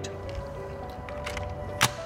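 Background music with steady held notes; near the end, one sharp click as the Baxi uSense room thermostat is pushed onto its wall backplate and engages.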